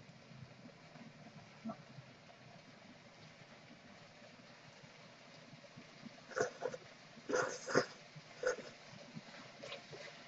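A person slurping stir-fried ramen noodles off chopsticks: several short, loud sucking slurps in the second half, after a near-quiet stretch.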